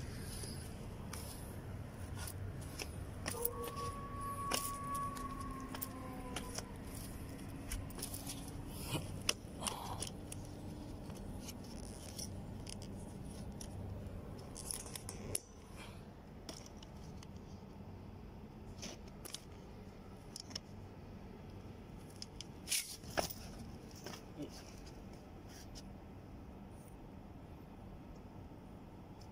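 Scattered small clicks and scrapes of fishing tackle being handled, over a low steady background hum. A faint held tone sounds for several seconds in the first half.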